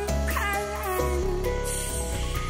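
A woman's voice singing live into a handheld microphone, with a wavering glide in pitch, over sustained instrumental accompaniment and a deep bass note that shifts about a second in.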